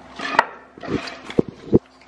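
Hand-tool work on a steel truck axle shaft: three sharp metallic clicks and knocks, with short bursts of scraping between them.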